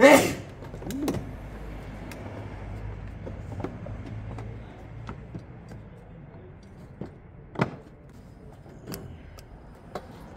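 A short burst of voice at the start, then scattered light clicks and taps of small bolts and hand tools on a scooter's plastic body panels as they are fitted, over a low background hum through the first half.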